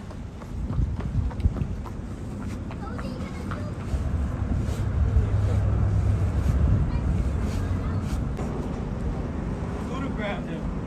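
Wind buffeting the microphone, a low rumble that strengthens about four seconds in, over the wash of sea against shoreline rocks, with a few sharp clicks in the first seconds.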